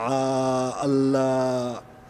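A man's voice holding two long, drawn-out vowel sounds at a steady pitch, each just under a second, with a short break between them.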